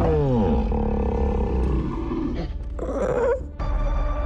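Kong's roar, a giant ape monster's cry made for the film, starting high and falling in pitch, over dramatic trailer music. A second, shorter call comes about two and a half seconds in.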